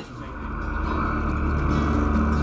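Motorcycle engine running at a steady pace, fading in and growing louder.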